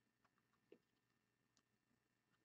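Near silence: room tone with three very faint short clicks.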